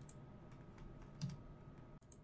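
Faint, scattered clicks of computer keyboard keys, a few taps over quiet room tone.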